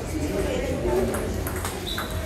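Table tennis rally: the plastic ball knocking off paddles and the table in a quick series of sharp clicks, one near the end with a short high ping, over a hall's background chatter.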